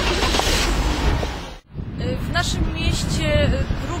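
Outdoor street noise with passing traffic, cut off abruptly for a moment about a second and a half in, then people talking.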